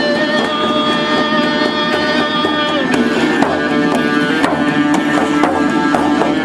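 Live folk-rock band playing: accordion, electric guitar and hand drums together, with long held notes and a few sliding notes about halfway through.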